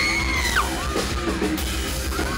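Live metalcore band playing loud, steady music in a hall, with a high yelled note held over about the first half second.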